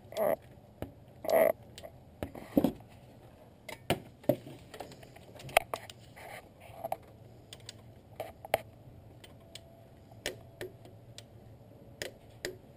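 Torque wrench ratcheting in short strokes as the alternator pivot bolt is tightened, giving scattered, irregular metallic clicks, with a few louder clicks in the first three seconds.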